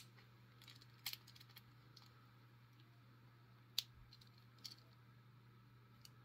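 Mostly near silence with a few faint metallic clicks from a thin tensioner raking in the small TSA keyway of an Antler 3-digit combination luggage padlock, working its master-key mechanism back to the locked position. One sharper click comes nearly four seconds in.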